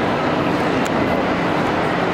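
Steady background noise of a busy airport terminal, a continuous even rumble and hiss, with a small click just before a second in.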